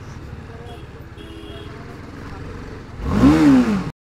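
BMW G310RR's single-cylinder engine idling, then one throttle blip about three seconds in that rises and falls in pitch before cutting off suddenly.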